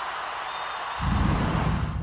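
A large stadium concert crowd cheering, joined about a second in by a louder deep rumble.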